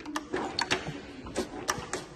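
Kickstarter of a 1971 Honda CT90 being kicked over, giving about six sharp metallic clicks and clacks with no engine catching. It feels like it has nothing to push against, which the owner puts down to a slipping clutch.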